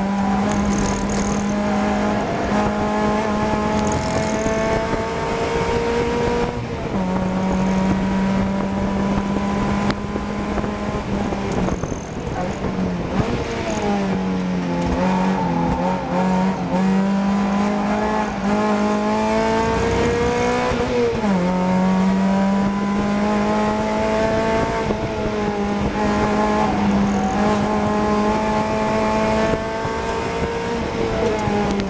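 In-cabin sound of a race Mazda MX-5's four-cylinder engine under hard acceleration on track. The note climbs steadily and drops at an upshift about six seconds in. Around the middle it falls and wavers through braking and downshifts for a slow corner, then climbs again through another upshift a little after twenty seconds.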